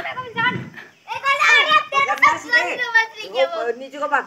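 Children's voices calling and shouting as they play a chasing game, with a brief lull about a second in.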